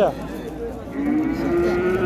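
A calf mooing: one long, fairly high, level call that starts about a second in.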